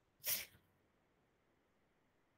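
A single short, sharp sneeze from a person near the microphone, about a quarter second in, followed by faint room hiss.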